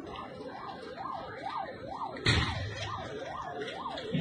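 An electronic alarm siren wails up and down in pitch about twice a second, the kind set off in cars parked near a blast. About two seconds in comes a sudden loud burst of noise, the loudest moment.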